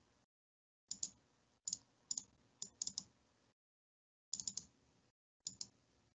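Faint, irregular clicks from computer use at a desk, coming in small clusters of two or three, about a dozen in all.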